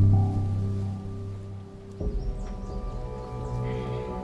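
Dramatic background score of sustained low chords. The first chord fades over about two seconds, and a new held chord comes in about two seconds in.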